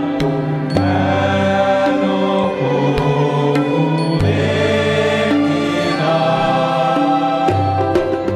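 Stage music from a Bengali musical play: a group of voices singing in chorus in long held notes over instrumental accompaniment, with a few light percussion strikes.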